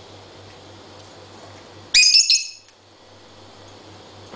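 Rosy-faced lovebird giving one short burst of loud, shrill squawking chirps about two seconds in, lasting under a second.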